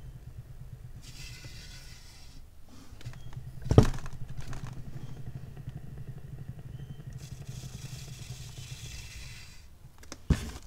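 Electric paint spinner's motor running with a steady low hum as it whirls a freshly poured acrylic canvas. There is one sharp, loud knock about four seconds in and two stretches of soft hiss.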